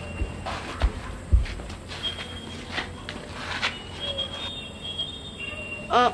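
Night ambience with short, high insect chirps now and then, and a few soft thumps and shuffles in the first couple of seconds.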